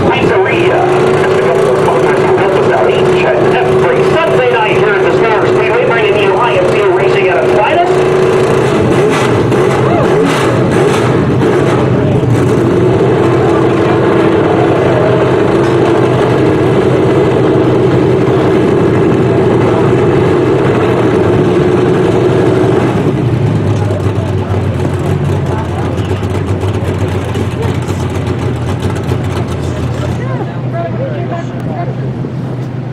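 Stock car engine running steadily at idle, with people talking over it. The engine note shifts lower and the sound gets slightly quieter about three quarters of the way through.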